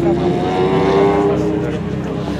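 Ferrari 512 TR's flat-twelve engine accelerating past, its note rising in pitch for about a second and a half and then dropping away.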